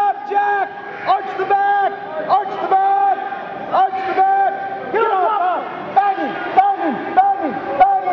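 Repeated loud shouting of encouragement to a grappler on the mat, each shout held on one pitch and then falling off at the end, about one or two a second.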